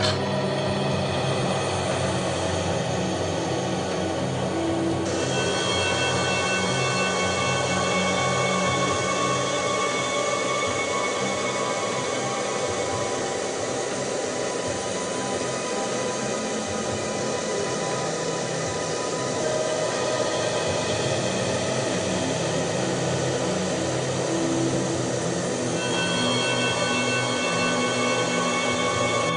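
Handheld hair dryer blowing steadily, under tense background music with sustained tones.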